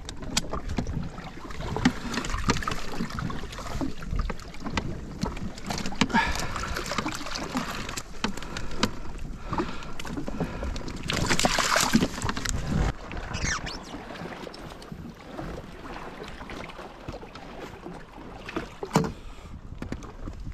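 Seawater running into the footwells of a jet ski as it quietly floods through a slightly open back-left hatch, with clicks and knocks of fishing gear being handled throughout.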